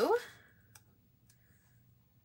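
A few faint, sharp clicks from fingernails and a paper sticker as a box sticker is taken off its sheet and laid on a planner page.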